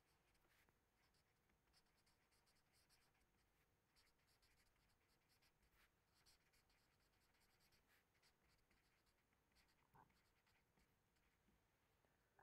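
Near silence, with faint, irregular scratching of a marker pen writing on paper.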